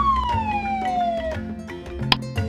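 A cartoon sound effect: one whistle-like tone gliding steadily downward for about a second and a half, over light background music.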